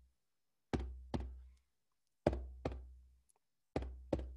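A low drum beaten in a slow double-stroke rhythm like a heartbeat: two strikes about half a second apart, the pair repeating roughly every second and a half, each strike ringing low and dying away.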